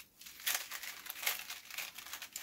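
Crinkling and rustling as items are rummaged out of their wrapping, in irregular scrunches.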